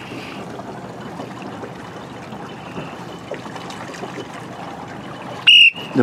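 Gentle water lapping with light wind, then a short, loud whistle blast about five and a half seconds in.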